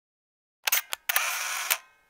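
Camera shutter sound effect: a few sharp clicks about two-thirds of a second in, then a short mechanical burst of about half a second that begins and ends with a click.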